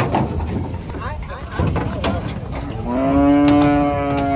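A cow gives one long, loud moo starting about three seconds in, rising at first and then holding a steady pitch, over the general noise of a crowd.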